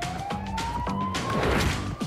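A siren wail sliding steadily up in pitch, over dramatic low music. A rushing noise swells near the end.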